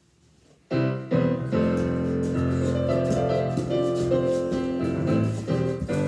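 Piano music that starts abruptly about a second in after near silence, then plays on steadily with several notes sounding together.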